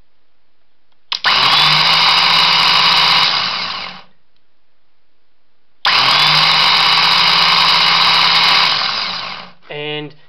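A 24-volt starter motor, modified to run as a series-wound motor, starts abruptly as its main contactor closes, whines up to speed, runs steadily for about three seconds and then winds down when the contactor's coil is released. This happens twice, about a second in and again about six seconds in.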